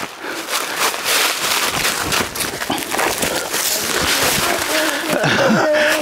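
A person scrambling up a steep bank of dry fallen leaves and undergrowth: a busy run of crunching and rustling with sharp cracks, then, near the end, strained grunts of effort and the start of a laugh.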